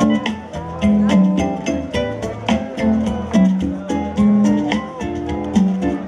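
Live kompa band playing at full level: electric guitar over bass, keyboards and drums with a steady beat.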